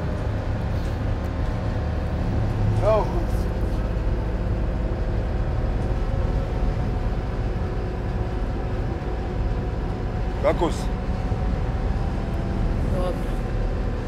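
Old bus on the move, heard from inside the passenger cabin: a steady low engine and road rumble with a faint engine hum, even throughout. A few short words are spoken over it.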